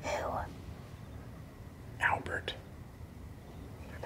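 Whispered speech: two short whispered utterances about two seconds apart.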